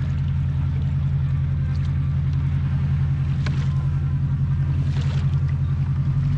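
Engines of a large commercial boat running close by: a steady, low drone with a fast, even pulse.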